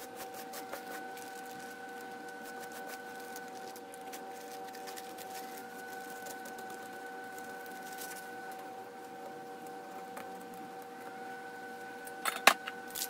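Plastic bag crinkling and small hardware pieces clicking as they are handled and set down on a stencil disc, over a steady high-pitched electrical hum.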